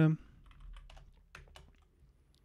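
Computer keyboard keystrokes: several light, separate taps while a command is typed in and entered.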